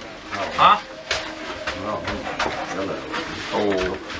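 Indistinct chatter of several people talking in a small, crowded room, with a few light clicks among the voices.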